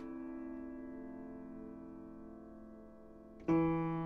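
Solo piano improvisation: a held chord dies away slowly for about three seconds, then a new chord is struck loudly about three and a half seconds in.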